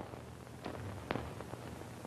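Faint hum and hiss of an old film soundtrack, with two or three soft, sharp clicks about half a second apart partway through.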